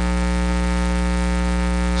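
Steady electrical mains hum and buzz with many evenly spaced overtones, carried through the sound system's audio.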